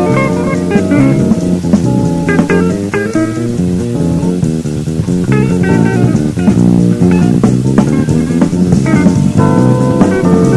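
Live big-band jazz playing a funk blues: a steady rhythm-section groove with guitar and bass to the fore.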